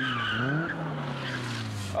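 Car engine revving, its pitch climbing over the first half second and then slowly dropping, with tires squealing during a street race.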